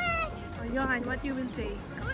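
A child's high-pitched, wavering call trails off in the first moment, then softer voices follow over background music.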